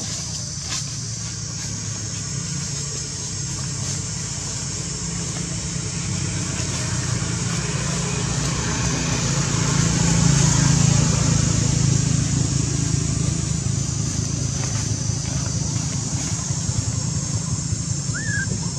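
A motor vehicle's engine running as it goes by on the road, a low rumble that grows louder to a peak a little past halfway and then fades.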